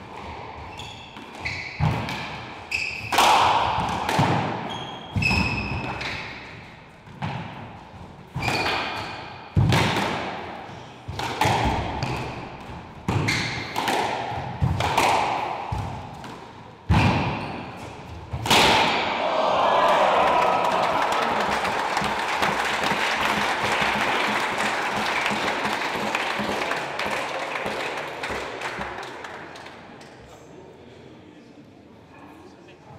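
A squash rally: the ball is struck hard about once a second, cracking off rackets and the court walls with echoing decay, with short shoe squeaks on the hardwood floor in between. The rally ends about 18 seconds in with a last loud hit, and the audience applauds for about ten seconds, the applause fading near the end.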